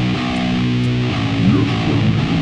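Heavy psychedelic stoner/doom rock with guitars and bass playing sustained chords, and a guitar note sliding up about one and a half seconds in.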